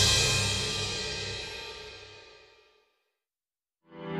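Background music fading out over about two and a half seconds, then a little over a second of silence before new music with sharp beats starts at the very end.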